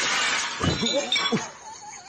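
A large watermelon splitting open under a kitchen knife: a sharp crack, then a loud shattering crash lasting about half a second. A person's voice then cries out.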